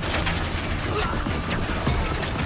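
Battle sound effects in a trailer mix: dense clattering with several sharp swishing hits, a few shouts, and music underneath.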